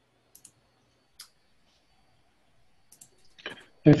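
A few faint, scattered clicks in a pause, then a man starts speaking near the end.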